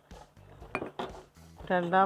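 A steel ladle clinking and scraping against a clay pot while stirring thick payasam: a few sharp knocks, the loudest about a second in. A voice comes in near the end.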